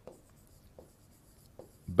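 Faint strokes of a stylus writing on an interactive display screen, with a few soft taps of the pen tip.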